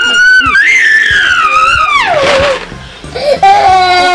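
A toddler crying in long, high wails; the second wail slides down in pitch, and after a brief lull a lower held cry starts near the end.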